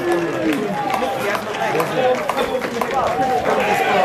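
Several men's voices shouting and calling over one another right after a goal, with scattered sharp clicks among them.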